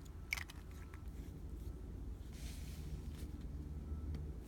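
Faint handling of a metal fountain pen over paper: a sharp click about a third of a second in and a brief soft rustle around the middle, over a low steady hum.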